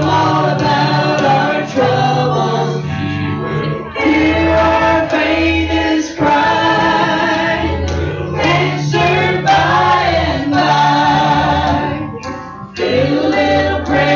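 Congregational gospel song sung by a small worship team of male and female voices into microphones, over a steady instrumental accompaniment with low bass notes, with brief dips between sung phrases.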